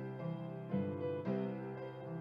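Gentle piano music playing, with new notes or chords struck about every half second.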